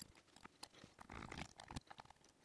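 Near silence with a few faint, brief clicks of small metal tools at a rebuildable atomizer's coil deck, as flush cutters are set to trim the coil leads.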